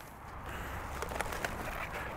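Aluminium foil being pulled open around a rack of rested ribs, giving a few faint, light crinkles over a low outdoor background rumble.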